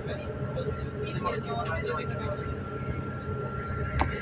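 Passenger train running, heard from inside the carriage as a steady low rumble. A thin steady whine starts about a second in and holds.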